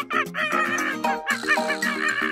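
A hen's clucking, a quick run of short clucks, most likely an added sound effect, over cheerful background music.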